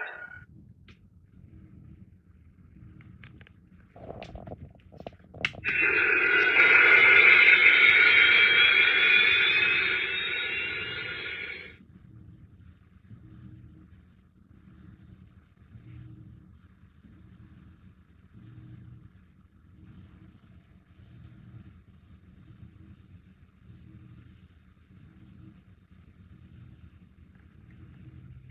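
Launch sound effect from the speaker of a Space: 1999 Eagle launch pad model: a few clicks, then about six seconds of rocket-engine noise with a rising whine that cuts off suddenly, followed by a faint low pulsing hum.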